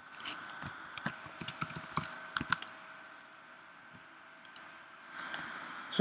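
Typing on a computer keyboard: a quick run of key clicks for the first two and a half seconds, then a few scattered keystrokes.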